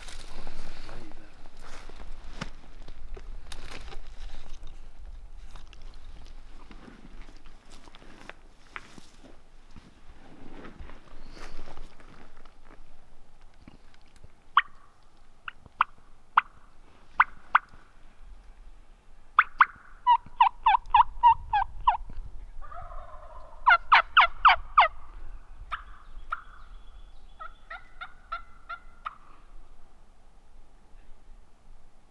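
Rustling and twig snaps of movement through brush for roughly the first twelve seconds. Then wild Merriam's turkey calls: a few single yelps, then two loud rapid rattling gobbles about four seconds apart, and a weaker calling series near the end.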